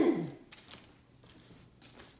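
A person's voice trailing off at the very start, falling in pitch, then a quiet room with a few faint soft ticks.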